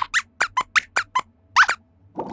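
Robot lab-rat puppet's squeaky voice: a quick run of about nine short, high-pitched squeaks, several sliding up in pitch, as its squeaked reply to a question.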